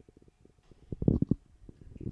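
A short cluster of low, muffled thumps or rumbles about a second in, with near quiet before and after.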